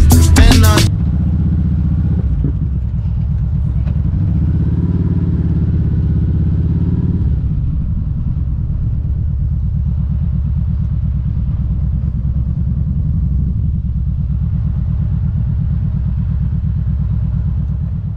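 Kawasaki Vaquero's V-twin engine running at low speed as the motorcycle rolls slowly, a little fuller for the first several seconds and then settling to a steady low-speed run.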